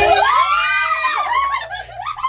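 Women squealing and laughing, high-pitched shrieks that swoop up and down and overlap, trailing off near the end.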